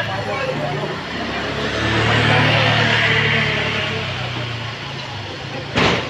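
A motor vehicle passes close by on the street: a low engine hum and hiss rise to a peak about two seconds in and fade away. A brief knock comes near the end.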